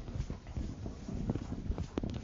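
A blackboard being erased: a string of irregular, light knocks and rubbing strokes of the eraser against the board.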